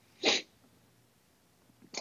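A person's single short, sharp burst of breath about a quarter second in, over low room tone.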